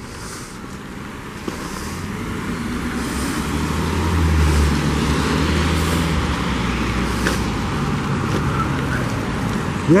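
City street traffic: car engines and tyre noise on wet pavement, growing louder as vehicles pass close and loudest about four to five seconds in.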